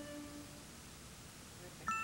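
A held flute note dies away in the first half second, leaving low room tone. Near the end a bright bell-like chime strikes and rings on.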